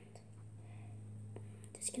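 Faint rubbing and a few small clicks of rubber loom bands being stretched and looped over fingers, over a steady low hum.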